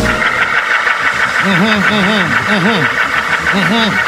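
Congregation shouting in response to the preacher. From about a second and a half in, one voice stands out, calling in repeated rising-and-falling phrases.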